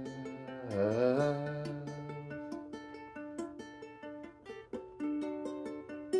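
Ukulele picked notes in a small room, with a man's held sung note that bends down and back up about a second in and trails off after two seconds or so; the ukulele then plays on alone.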